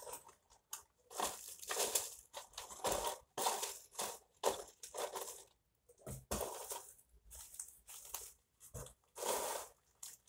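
Plastic bags and packing crinkling and rustling as they are handled and lifted out of a cardboard box, in a run of irregular bursts with short pauses.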